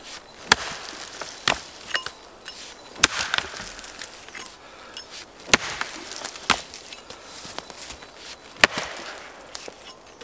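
An axe chopping into a felled birch trunk, notching it to bucksplit the log: about six sharp strikes, a second or two apart, with a few lighter knocks between them.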